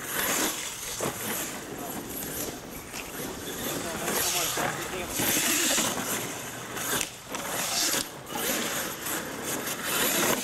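Radio-controlled monster truck running on a dirt track, its motor surging on and off as the tyres spin and throw up loose dirt, with people talking in the background.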